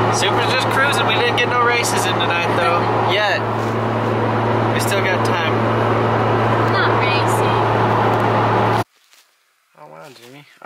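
Toyota MkIV Supra's single-turbo 2JZ-GTE straight-six with a 4-inch exhaust, heard from inside the cabin while cruising: a loud, constant low drone over road noise. It cuts off suddenly near the end.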